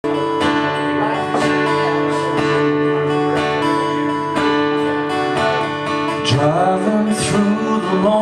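Steel-string acoustic guitar strummed in a steady rhythm as a song's intro, chords ringing with a strong stroke about once a second. A man's singing voice comes in near the end.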